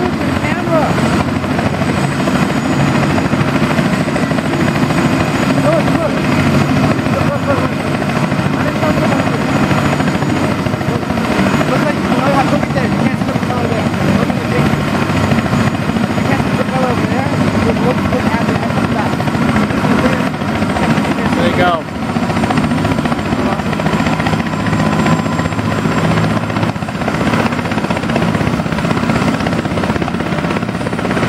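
Airbus AS350 AStar single-engine turbine helicopter running on the ground before lift-off, main and tail rotors turning. The sound is steady, with a brief drop in level about two-thirds of the way through.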